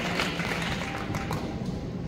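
Audience applause dying away, the last scattered claps about a second and a half in, then a low crowd murmur.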